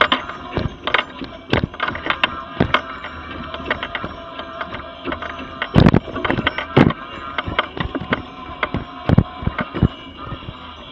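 Mobility scooter riding along a paved footpath: its electric drive whines steadily while the frame gives irregular knocks and rattles as it jolts over the paving slabs. The knocks are heaviest in a cluster around the middle and again near the end.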